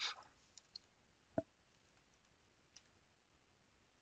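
A few faint, isolated clicks of a computer keyboard and mouse, the loudest about a second and a half in, with long quiet gaps between them.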